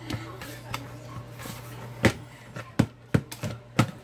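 Hands kneading dumpling (duff) dough in a mixing bowl: a series of sharp knocks and thumps as the dough is pushed and turned and the bowl shifts, about five of them in the last two seconds.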